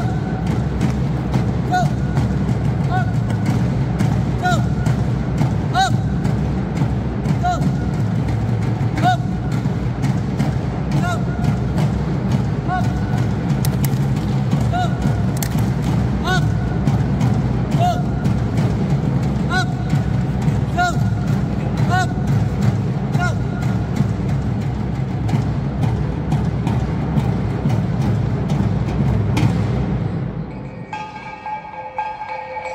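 Traditional West Sumatran dance music: steady drumming with short, bright melodic notes recurring about once a second.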